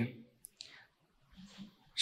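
A man's voice finishes a word, then a pause of near silence broken by a few faint, brief clicks.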